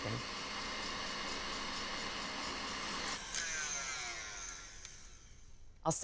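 KitchenAid Artisan stand mixer running with its whisk whipping egg whites and sugar to stiff peaks: a steady motor whine and whisk noise. About three seconds in its pitch starts to shift, and it fades away near the end.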